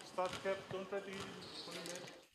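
Faint voices of several people talking in a large indoor sports hall, with a few light thumps on the wooden floor.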